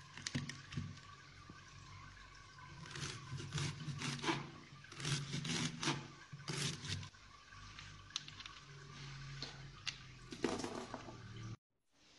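A knife cutting through a raw fennel bulb on a wooden chopping board: irregular crisp cuts and taps of the blade on the board, in clusters, over a steady low hum.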